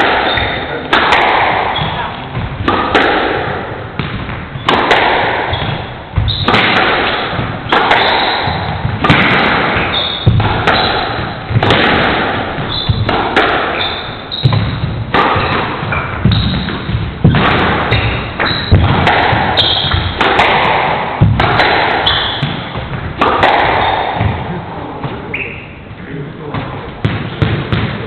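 A squash rally in an enclosed court: the ball cracks off rackets and walls about once a second, each hit echoing in the court, until the rally ends near the end.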